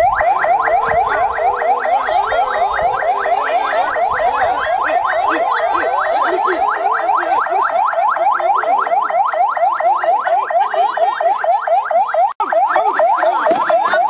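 Police siren in a fast yelp: a rising wail repeated about five times a second, loud and unbroken apart from a split-second gap about twelve seconds in.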